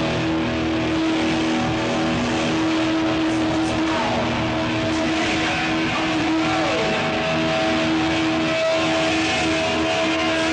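Distorted electric guitar through a loud stage amplifier, holding sustained notes, with two short sliding pitch bends about four and seven seconds in.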